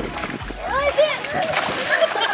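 Water splashing, with children's high-pitched shouts starting about half a second in.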